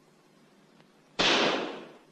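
A single pistol shot a little over a second in: sudden and loud, then dying away over most of a second.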